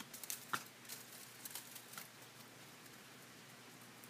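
Faint snips and crinkles of scissors cutting and handling strips of silver foil paper: a few short, sharp ticks in the first two seconds, the clearest about half a second in, then near silence.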